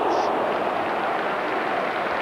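A football stadium crowd making a loud, steady noise as a long-range free kick flies just wide of the post.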